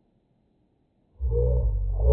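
A man's voice played back heavily slowed down, so that it comes out as a deep, drawn-out, very low-pitched sound. It starts suddenly a little over a second in, after near silence.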